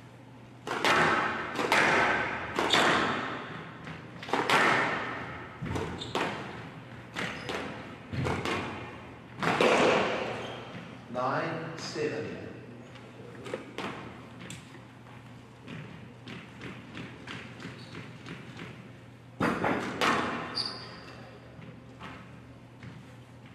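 Squash ball struck back and forth on a glass court: irregular sharp knocks of the ball off racket strings, front wall and glass walls, echoing in a large hall. Bursts of voices rise several times between the shots.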